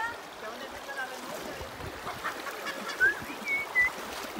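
Shallow river running over stones, a steady rush of water, with a few short high chirps in the last second or so.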